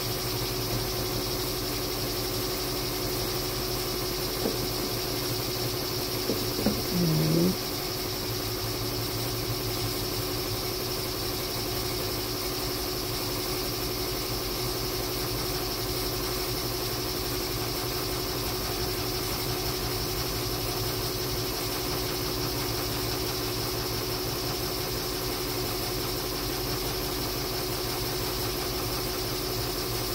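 Embroidery machine stitching in the background, a steady mechanical hum with no change in pace. About seven seconds in there is a brief, louder sound.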